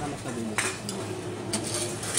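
Empty drink cans and bottles clinking and clattering as they are fed into a Tomra T-710 reverse vending machine, with sharp clacks about half a second and a second and a half in.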